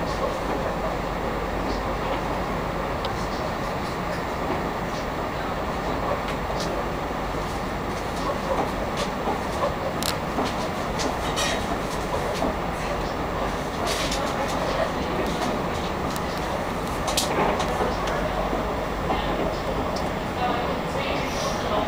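Passenger train running, heard from inside the carriage: a steady rumble and rattle of the moving train, with a few sharp clicks in the second half.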